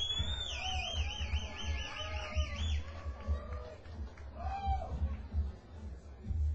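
A high tone that sweeps up and then warbles rapidly for about three seconds, over a low bass rumble from the stage, with a few scattered crowd voices.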